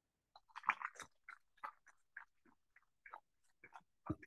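Faint, irregular crackles and rustles of a corded handheld microphone being handled as it is carried and passed to another person.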